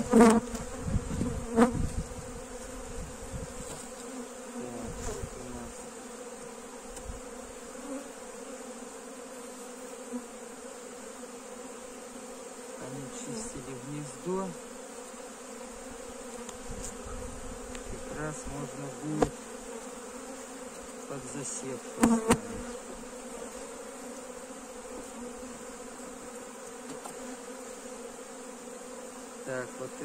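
Honeybees buzzing steadily around an open hive, a continuous even hum. A few brief knocks break it, the loudest near the start and two more about two-thirds of the way in.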